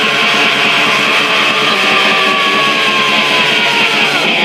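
Raw black metal: a dense, loud wall of distorted electric guitar that plays on without a break, with a fast pulse running under it. In the second half a long held note slides slowly down in pitch.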